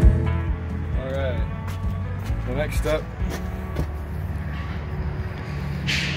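Guitar background music fading out in the first second, then a steady low rumble with a few brief, faint voices.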